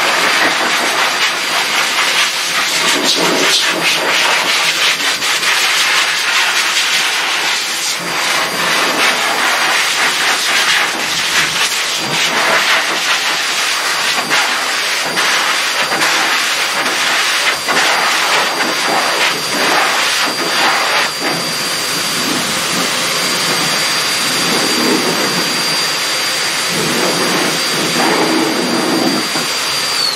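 High-velocity pet dryer blasting air through its hose and nozzle over a wet dog's coat: a loud, steady rush of air with a steady high whine from the motor. The air sound shifts as the nozzle moves over the dog.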